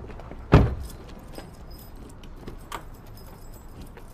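A car door slammed shut on a taxi about half a second in, one heavy thump, followed by a few faint light clicks and a smaller click nearly three seconds in.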